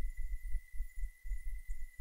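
Faint, uneven low throbbing rumble with a thin steady high-pitched whine: the background noise of the narration recording, heard in a pause between sentences.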